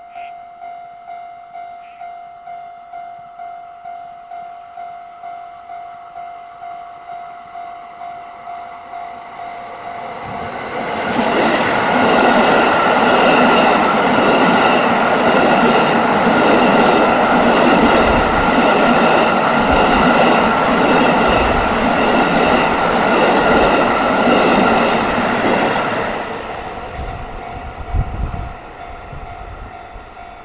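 Level crossing warning bell ringing about twice a second as the yellow JR Central Kiya 97 rail-carrying diesel train approaches. From about 11 s in the train passes close by for some fifteen seconds, its engines and wheels on the rails loud enough to drown the bell. The bell is heard again as the train moves away, with one sharp knock near the end.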